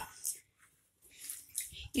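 Water poured from a pan through a mesh strainer holding boiled vermicelli, faint and intermittent trickling and splashing.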